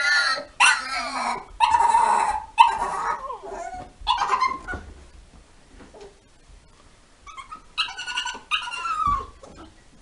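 Staffordshire bull terrier vocalising in a run of short, pitch-bending whines and yelps: about five in the first five seconds, then two more near the end after a quieter spell.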